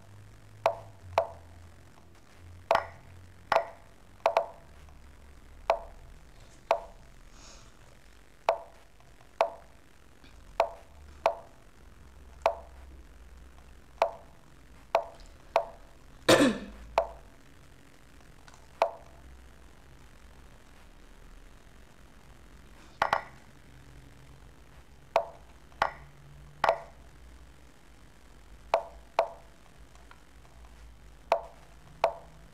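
Lichess piece-move sounds: short wooden clicks, one for each move played by either side in a fast bullet game. They come unevenly, often about a second apart, with a pause of a few seconds near the middle and one louder, longer sound about halfway through.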